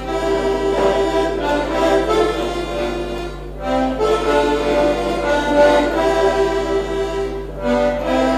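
Hohner button accordion playing a folk tune with melody over chords. The phrases break briefly about three and a half seconds in and again near the end.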